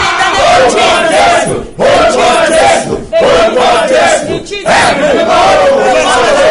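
Loud shouting voices in fervent worship, drawn-out high-pitched phrases broken by three short pauses.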